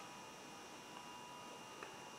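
Quiet room tone: a faint steady hum and hiss with thin steady tones, and one faint click near the end.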